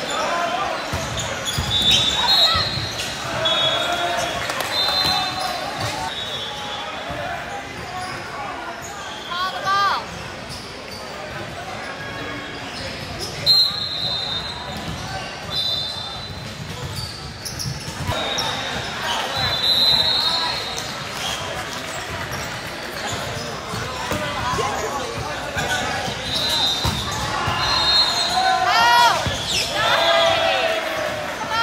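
Indoor gym during a volleyball match: sneakers squeaking on the hardwood court, volleyballs being hit and bouncing with sharp smacks, over indistinct voices of players and spectators echoing in a large hall.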